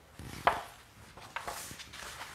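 Handling of a book at a lectern: pages rustling and small taps and clicks, with one sharp knock about half a second in.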